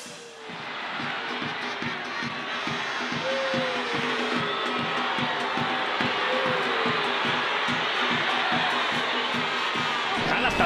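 Stadium crowd noise with a few scattered shouts, swelling over the first couple of seconds and then holding steady. Underneath runs a low, steady music beat of about three pulses a second.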